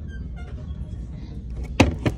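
One sharp knock near the end as a high-heeled shoe is set back into its cardboard shoe box on a store shelf, over a steady low hum.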